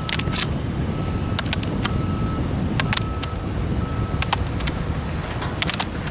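Roller ski wheels rumbling steadily on asphalt, with sharp irregular clicks of ski pole tips striking the pavement.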